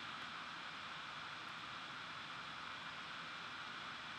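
Steady faint hiss of room tone and microphone noise, even throughout with no distinct events.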